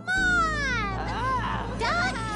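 A child's high-pitched voice singing drawn-out, wavering notes that glide up and down, over a music bed that comes in just after the start.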